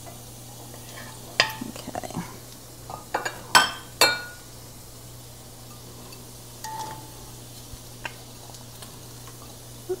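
Wooden spoon stirring and knocking in ceramic-coated frying pans, with faint sizzling of shallots in butter and oil over a steady low hum. A run of sharp knocks and short ringing clinks of spoon, pan and glass bowl comes between about one and a half and four seconds in, with a couple of lighter ones later.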